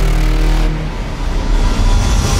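Cinematic logo-sting sound design: a deep rumbling bass drone under a noisy rushing whoosh, easing off about a second in and swelling again near the end.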